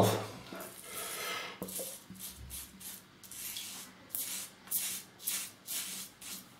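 Rockwell 6S double-edge safety razor with a Wilkinson Sword blade scraping stubble through shaving lather in a run of short strokes, about two to three a second, starting about a second and a half in. It is set on plate one, its mildest setting, which takes little off.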